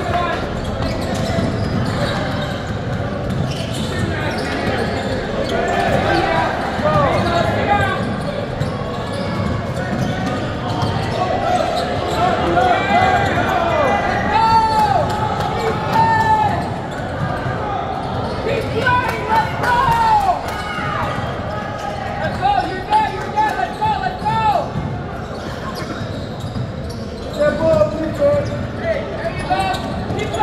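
Live basketball play in a large gym: the ball dribbling on the court floor and sneakers squeaking in short chirps, over players' and spectators' voices, all echoing in the hall.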